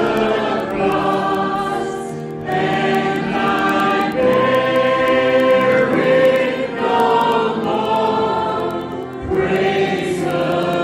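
A group of voices singing a slow worship song in long held notes, with short breaks between phrases about two and a half seconds in and again near the end.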